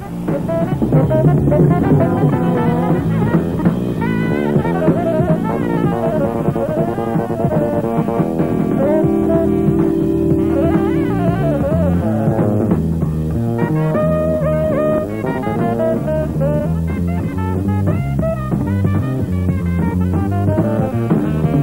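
Live jazz-fusion band playing: a saxophone improvising flowing melodic lines over electric bass and a drum kit.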